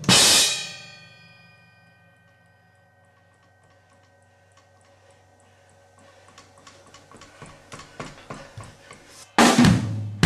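Drum kit: a loud hit with a cymbal crash at the start rings and fades over about two seconds. After a quiet stretch with faint, evenly spaced ticks, drum strokes build louder and louder from about six seconds in, ending in a big crashing hit near the end.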